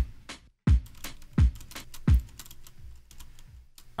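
A sampled acoustic drum break playing back: four deep kick drum hits about 0.7 seconds apart with crisp hi-hat and snare ticks among them, then lighter ticking for the rest.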